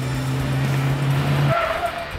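A car's engine and road noise under trailer music holding one steady low note. Both cut off abruptly about one and a half seconds in, and a brief higher tone follows.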